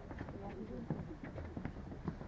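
Footsteps of many people walking on a wooden boardwalk, a quick irregular patter of knocks, with people talking in the background.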